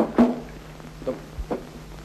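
A few short knocks and a low thump as a desk telephone's receiver is picked up and handled, over the steady hum of an old film soundtrack.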